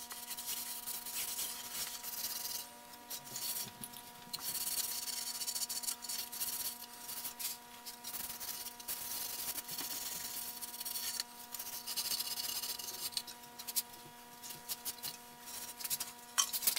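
Hands rubbing along the finished wood of a quilt rack, a dry scrubbing hiss in strokes of about a second with short pauses, over a steady electrical hum.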